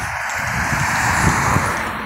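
A car going past on the road, its tyre and engine noise swelling and then easing off.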